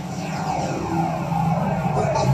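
Radio show jingle coming in: music with a sweeping whoosh, growing louder.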